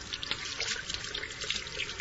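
Water running from a kitchen tap as hands are washed under it, a steady splashing rush.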